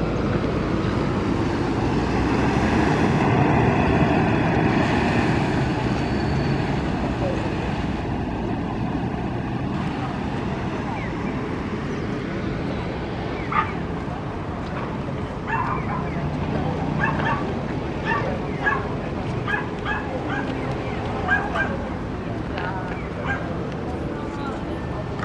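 Outdoor background noise that swells for a few seconds early on, then a small dog yapping repeatedly in short, high yelps through the second half.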